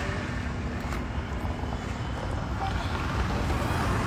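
Steady low rumble of background noise, with a faint hiss above it and no clear single event.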